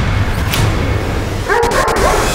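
Trailer sound design: a deep rumbling drone with a couple of whooshes, then a short, high, wavering cry about one and a half seconds in.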